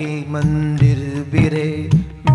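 A man singing a devotional Hindi chant in long, held notes that glide between pitches, with light tabla strokes beneath.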